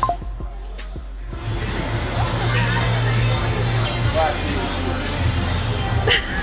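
Background music with a steady bass line, with some voices talking indistinctly over it.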